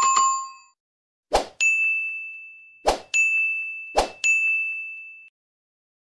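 Subscribe-button sound effects: a short chime, then three times a sharp hit followed by a bell-like ding that rings for about a second before fading.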